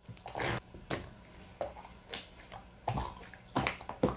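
Opaque white slime being kneaded and pressed by gloved hands: wet squishing, with irregular squelches and small air pops a few times a second.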